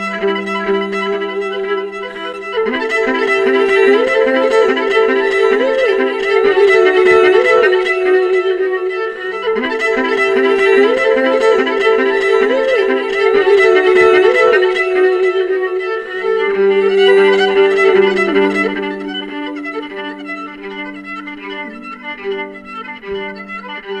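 Live acoustic violin playing a bowed, sliding melody over the band's acoustic backing. The music swells a few seconds in and softens over the last third.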